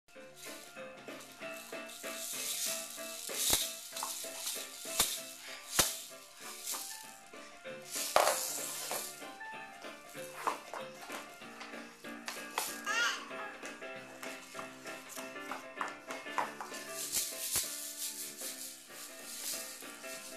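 A small plastic baby rattle shaken in spells over music playing in the background, with a few sharp knocks in the first six seconds.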